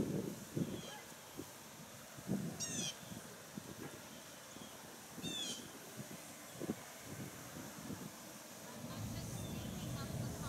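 A bird calling outdoors, a quick run of high notes about three seconds in and again about five and a half seconds in, over soft scattered low thumps. A low steady rumble rises near the end.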